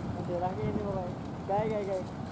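A distant call to prayer (adhan) chanted over a loudspeaker: two long, wavering sung notes, the second rising then falling near the end.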